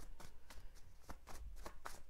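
Tarot cards being shuffled by hand: a quick, irregular run of soft card flicks, about six a second.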